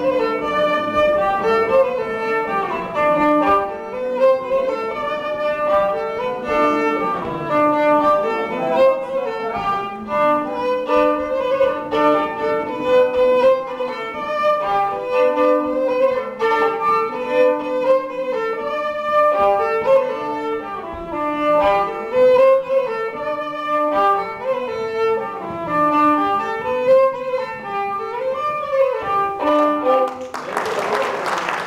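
Solo violin playing a lively folk tune in a quick run of notes, the tune ending right at the close.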